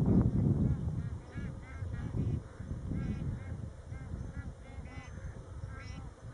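A flock of bar-headed geese honking, many short nasal calls overlapping irregularly, over a low rumble that is loudest in the first second.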